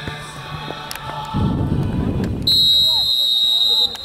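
A referee's whistle blown in one long, steady, loud blast of about a second and a half near the end, the kick-off signal, after a short spell of low, rumbling noise. Music fades out in the first second.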